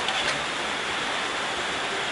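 Mixed vegetables and chicken sizzling in a hot wok: a steady hiss.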